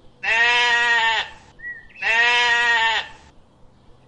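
Racka sheep bleating twice: two long, steady bleats of about a second each, the second starting roughly a second after the first ends.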